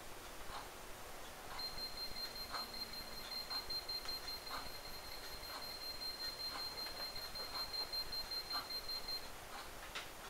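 K-Moon GM3120 EMF meter's piezo alarm sounding one steady high-pitched tone for about eight seconds. It signals that the electric field from a live power cord held just above the meter is over its alarm threshold. The tone starts about a second and a half in and cuts off near the end.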